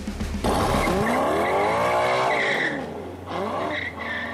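A sports car pulling away hard: the engine revs up and back down while the tires squeal, then a second, shorter rev and squeal near the end.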